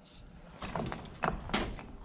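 A few short, sharp sounds of a knife cutting the hide away from a raccoon's head while the skin is held taut, starting about half a second in.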